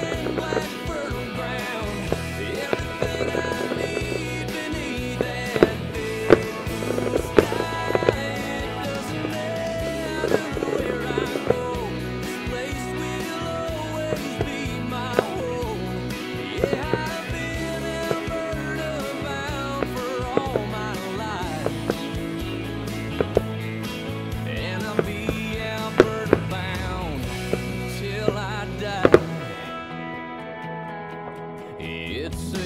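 Instrumental passage of a country song playing as the fireworks show's soundtrack, with sharp firework bangs cracking through it every second or two. The strongest bangs come about six seconds in and just before the end.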